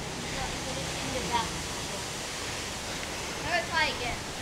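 Steady, even hiss of outdoor background noise, with a faint voice briefly about a second in and again near the end.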